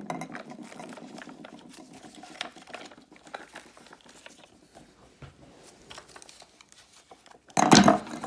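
Quiet rustling and small plastic clicks as the ribbed hose and housing of a Vax Blade cordless vacuum are handled and the hose is compressed down, with a short louder bump near the end.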